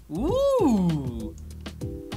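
A man's drawn-out "ooh", rising and then sliding down in pitch, over quiet background music.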